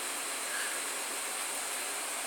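A steady hiss with no distinct events.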